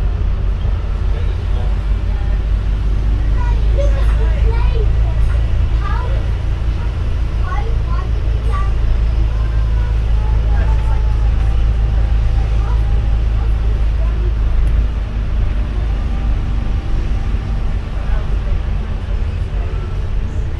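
A double-decker bus's engine and drivetrain running as it drives along, heard from the upper deck as a steady low rumble that eases slightly about three-quarters of the way through.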